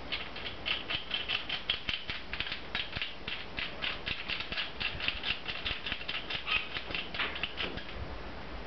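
Steel nut being wound by hand down the threaded rod of a homemade injector-sleeve puller, metal threads giving a rapid, irregular metallic clicking of about four to five clicks a second.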